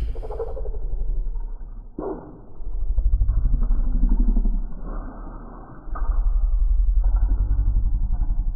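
A muffled engine running and revving, heard with its treble cut off. It is a dense, pulsing rumble that swells twice, with a rise in pitch near the middle.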